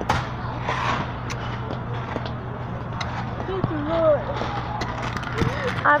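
Supermarket background: a steady low hum with scattered clicks and knocks, and voices from about halfway through.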